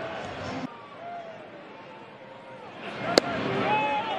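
Ballpark crowd noise with scattered fan shouts, then about three seconds in a single sharp pop of a pitched baseball smacking into the catcher's mitt, after which the crowd noise swells.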